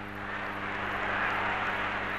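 Football stadium crowd noise, a steady mass of many voices that swells a little, over a steady low hum from the old film soundtrack.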